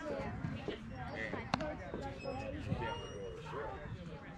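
Background voices of people talking and calling, with one sharp knock about a second and a half in.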